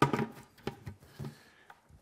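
A few faint knocks and handling sounds from a plastic bucket and its lid being handled and set down.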